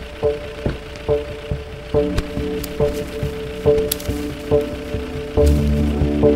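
Suspenseful film score: a steady pulse of short pitched notes, a little over two a second, with a low bass drone swelling in near the end.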